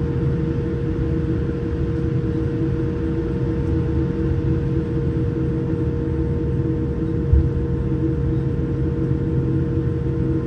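Inside a jet airliner's cabin during a slow taxi: a steady hum of engines and cabin air, with a low rumble and one brief low thump about seven seconds in.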